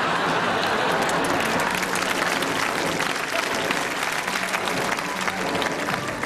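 Studio audience applauding, a dense patter of many hands clapping that grows fuller about a second in.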